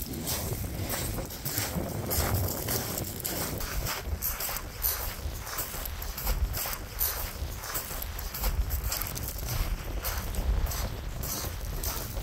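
Footsteps on loose beach pebbles, a steady run of crunching steps, with wind rumbling on the microphone.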